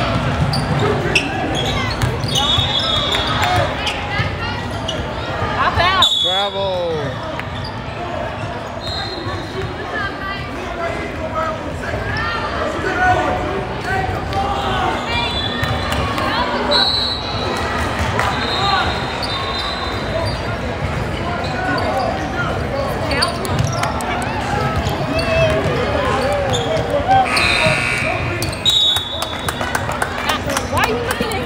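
Basketball game on a hardwood gym floor: the ball bouncing as it is dribbled, with short high squeaks of sneakers on the court, all echoing in a large hall over spectators' voices.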